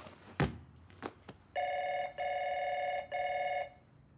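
A loud thump about half a second in and a few short clicks, then an office telephone ringing with an electronic warble, about two seconds of ring broken into three pulses.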